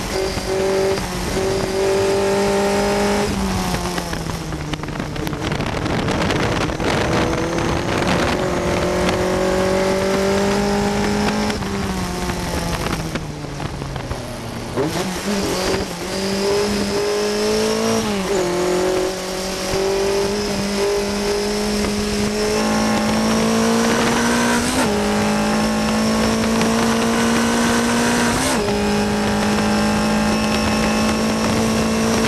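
On-board sound of a 1960 Cooper T53 Lowline racing car's Coventry Climax four-cylinder engine at racing speed, with wind noise. Its note falls steadily as the car slows for a corner, then climbs and holds high through a run of upshifts as it accelerates onto a straight.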